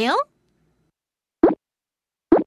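A single short cartoon 'bloop' sound effect, a quick upward pitch glide, about one and a half seconds in, after a voice finishes a sentence.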